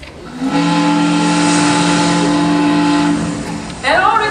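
A long, steady horn blast played over the theatre sound system as a stage sound effect. It holds one pitch for about three seconds and stops shortly before a voice comes in at the very end.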